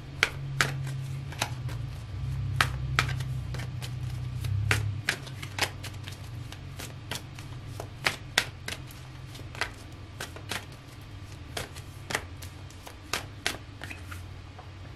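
A deck of tarot cards being hand-shuffled, the cards clicking and slapping together in sharp, irregular taps, one to three a second.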